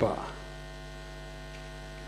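Steady electrical mains hum with a stack of even overtones, picked up through the microphone and sound system while the speaker pauses.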